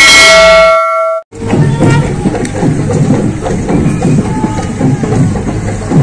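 A bell-chime sound effect rings once and dies away over about a second, then cuts off; from there on a loud, busy outdoor crowd with music fills the rest.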